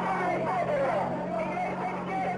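Several voices talking over one another, with a steady low hum underneath.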